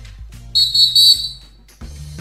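A referee's whistle sound effect, one shrill blast of about two-thirds of a second starting about half a second in, over the podcast's intro music. The music briefly drops out near the end, then comes back.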